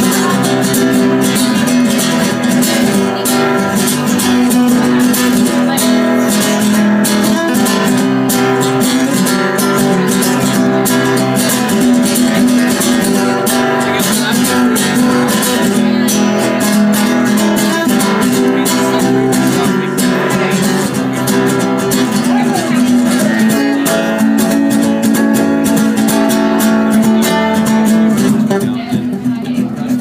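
Classical-style guitar strummed steadily in an instrumental passage of a song; near the end the strumming thins into separate plucked notes.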